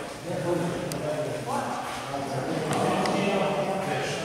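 Background chatter of several people talking at once in a large hall, with two short sharp clicks, one about a second in and one near the end.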